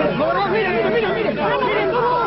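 Several people talking at once, their voices overlapping in a tense exchange.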